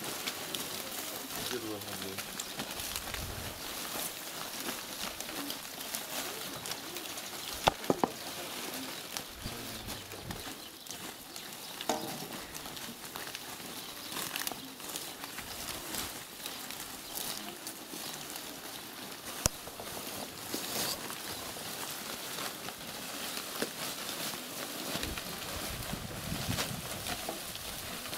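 Dry peeled tree bark and wood scraps rustling and crackling as they are gathered by hand and thrown onto a pile, with many small clicks and occasional sharp wooden knocks, including a quick cluster of three about eight seconds in.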